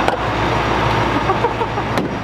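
Vehicle engine running at a fuel pump, a steady low rumble.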